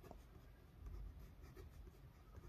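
Faint sound of a pen drawing on notebook paper, barely above near silence, a little louder briefly about a second in.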